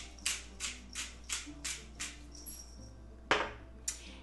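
Hand pepper grinder being twisted, a rhythmic rasping crunch of about three strokes a second that stops about two seconds in, followed by a single sharp knock near the end.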